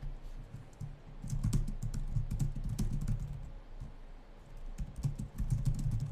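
Typing on a computer keyboard: a quick run of key clicks and thuds from about a second in, a short pause, then another burst near the end.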